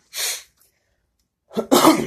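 A man coughs once, loudly, about a second and a half in. It is preceded by a short puff of breath.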